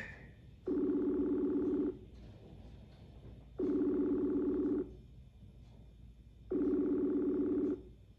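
Telephone ringback tone of an outgoing call: three identical ringing pulses, each about a second long, repeating every three seconds or so while the call waits to be answered.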